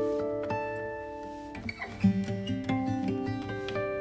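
Instrumental background music of plucked guitar notes, each note ringing on as the next is played.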